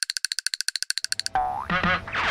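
Comic sound effects edited onto the soundtrack: a fast, even rattle of high clicks, about twenty a second, that cuts off suddenly after about a second and a half, then a wobbling cartoon boing.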